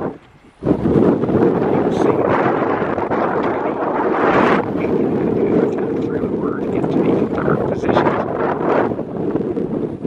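Wind buffeting the microphone: a loud, steady rumbling rush that drops out briefly just after the start, then carries on without a break.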